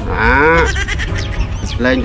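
A short, quavering bleat-like call, falling in pitch, lasting well under a second at the start, with background music beneath.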